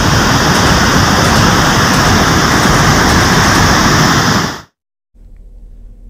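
Loud, steady rush of a muddy river in flood, cutting off suddenly about four and a half seconds in; a faint low hum follows.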